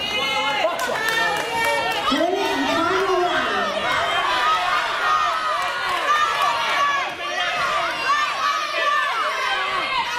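Ringside crowd shouting and cheering, many voices, a lot of them high, calling out over one another.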